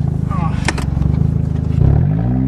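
1992 Toyota Corolla's four-cylinder engine running under load as the car drives off, a steady low drone. A single sharp knock sounds about two-thirds of a second in, and the engine note dips and changes near the end.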